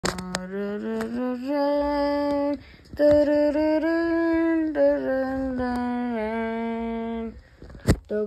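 A child's voice humming a slow wordless tune in long held notes, in two phrases with a short break between them, stopping shortly before the end. A sharp knock just before the end.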